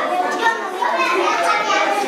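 Several children talking at once, a steady chatter of young voices during group work.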